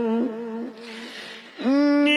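A man's voice singing a devotional kalam into a microphone. A held note with vibrato trails off, a breath is drawn, and near the end a new phrase swoops up into the next held note.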